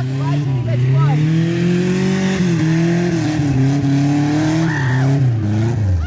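Chevrolet Chevette's engine revving hard as the car slides sideways across grass. The pitch climbs over the first two seconds, dips and holds, then falls away near the end. A hiss runs over it from the wheels spinning on dry grass and dirt.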